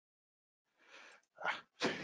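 A man's breathy, wordless vocal noises after a short silence, starting about a second in and ending in a sharper voiced burst near the end.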